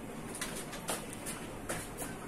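A few light clicks and knocks of kitchen utensils handled at a gas stove, three short sharp ones in two seconds.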